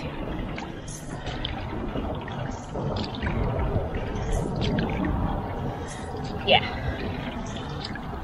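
Water splashing and trickling off an outrigger canoe paddle as it strokes through calm water, with a short splash every second or two.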